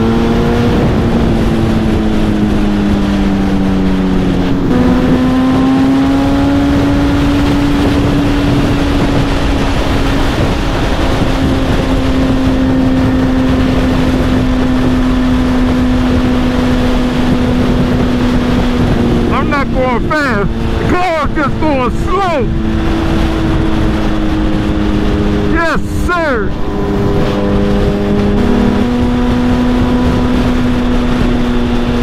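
Suzuki Hayabusa's inline-four engine running steadily at highway speed, with wind and road noise on the microphone. The engine pitch steps up about five seconds in and again near the end. Between about 19 and 27 seconds there are two short spells of quick up-and-down whistling.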